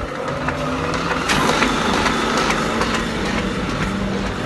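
Electric water pump motor running just after being switched on. A steady hum with a whir that builds about a second in.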